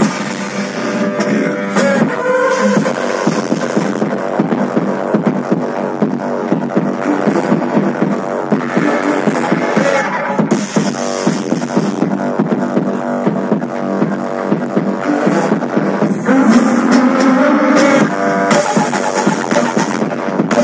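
Electronic pop music with a steady drum beat playing over a concert sound system.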